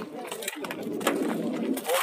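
Indistinct voices of people talking nearby, with a low cooing sound.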